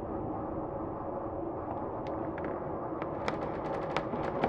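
Dark ambience soundscape: a steady low rumble with scattered sharp crackles and pops, which come thicker about three seconds in.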